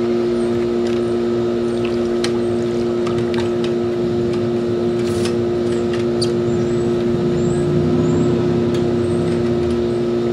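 Steady electric machine hum, two low tones held without change, with a few faint clicks over it.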